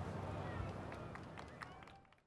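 Outdoor city ambience with faint chatter from a crowd in the background, with a few light ticks, fading out steadily near the end.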